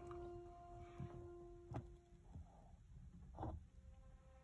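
Near silence: faint room tone, with a faint steady tone that stops about halfway through and two soft clicks.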